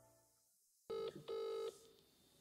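Telephone ringing in the British double-ring pattern: two short, even rings a fraction of a second apart, about a second in.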